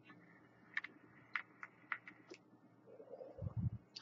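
A person taking a draw on a vape dripper: a faint hiss with several small clicks, then a short breathy exhale of vapor near the end.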